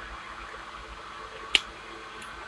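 Steady low hum of a small desk fan, with one short sharp click about one and a half seconds in from eating rice by hand.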